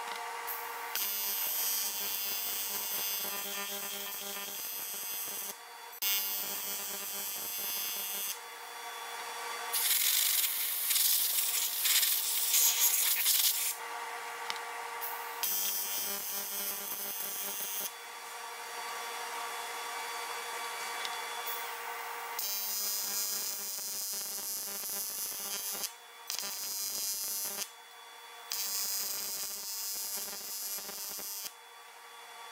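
AC TIG welding arc on aluminum buzzing in a series of runs a few seconds long, broken by short pauses as the arc is stopped and restarted; the loudest run is about ten to fourteen seconds in.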